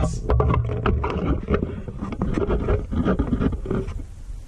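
Handling noise: many quick clicks, knocks and scrapes of hard parts and tools being moved about on a workbench, over a low rumble.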